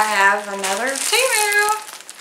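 A woman's voice talking, with long drawn-out vowels; the words are not made out.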